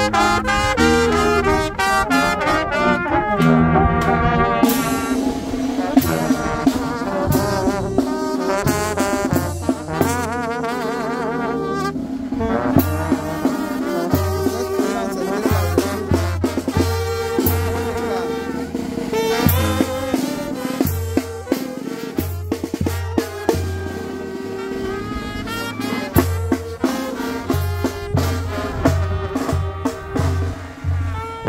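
Mexican village brass band playing a melody: saxophones and trumpets carry the tune over a sousaphone's repeating bass line and a bass drum.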